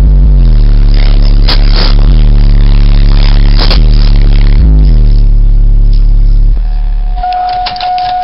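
Loud, bass-heavy music played through a truck's car-audio subwoofer system, with deep bass notes that slide in pitch; the system is running at only 12 volts. The music cuts off about six and a half seconds in, and a steady electronic beep follows near the end.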